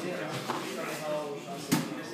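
People talking, with one sharp knock about three-quarters of the way through.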